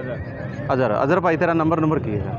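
A horse whinnying once for about a second, beginning about a third of the way in, with a quavering pitch.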